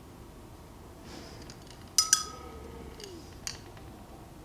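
A paintbrush clinks twice in quick succession against a hard container, with a short ringing tone after the second clink. A lighter tick follows about a second and a half later.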